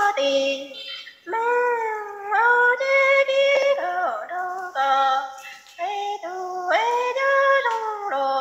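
A woman singing Hmong kwv txhiaj, traditional sung poetry, unaccompanied: short high phrases that slide and waver in pitch, each about a second or two long, with brief breaths between.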